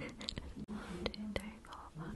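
Soft whispering close to the microphone, broken by a few faint clicks.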